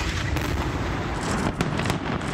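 Bomb explosions from air strikes: a heavy, continuous low rumble with several sharp cracks.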